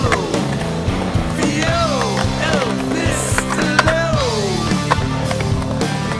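Skateboard wheels rolling and carving on a concrete bowl, with sharp clacks scattered through, under a music track with several falling slides.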